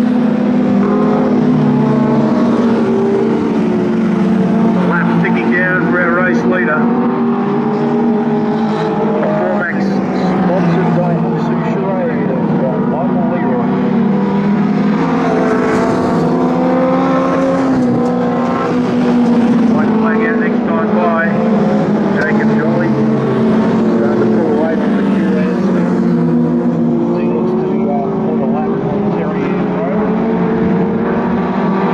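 Several junior sedan race cars' engines running hard on a dirt speedway oval. Their pitches rise and fall as the cars accelerate down the straights and back off into the corners.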